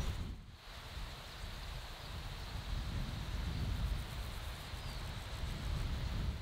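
Outdoor wind ambience in an open meadow: a steady hiss of moving grass and leaves over an uneven low rumble of wind on the microphone.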